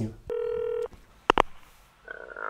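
Mobile phone call tone: one steady electronic beep of about half a second, followed a little later by two short clicks as the call goes through.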